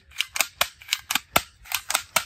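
Plastic toy assault rifle clicking as it is fired: a rapid, uneven run of sharp clicks, about five a second.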